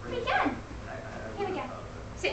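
Border terrier puppy giving a short, high yip about half a second in.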